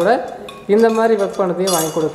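Large brass temple bell being rung by hand, its clapper striking with metallic clinks, one sharp strike near the end, and a steady high ring carrying on under a woman's voice.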